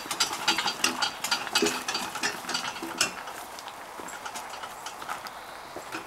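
Two-wheeled steel log dolly carrying a log, hauled over gravel: a run of irregular crunches, clicks and rattles from the wheels, frame and chain, with footsteps. The clicking is densest in the first three seconds and thins out after.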